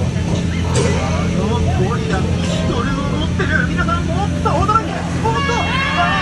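A tour boat's motor running with a steady low hum under speech.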